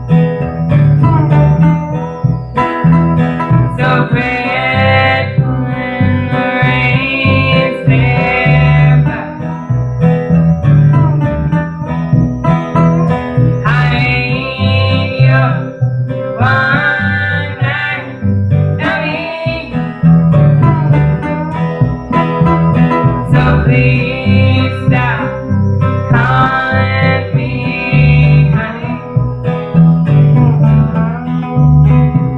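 Live acoustic country song: two women singing over two strummed acoustic guitars and an upright bass.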